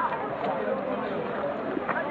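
Indistinct voices of several people talking in the background over steady outdoor street noise.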